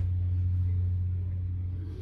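A steady low hum, with a short sharp click right at the start.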